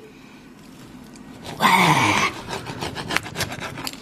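A pizza cutter wheel rolling through a crisp, freshly baked naan pizza crust: scraping and crackling with irregular clicks as it cuts. About a second and a half in there is a short breathy groan.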